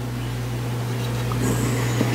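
A steady low hum, with faint rustling and light plastic clicks in the second half as a plastic transforming action figure is handled.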